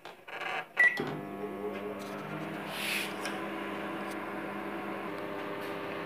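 A microwave oven's keypad gives a short beep and the oven starts. It then runs at full power with a steady electrical hum and fan noise while it bakes a cake batter.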